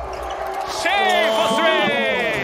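Basketball shoes squeaking on the hardwood court in a run of high chirps starting about a second in, over the arena's background noise.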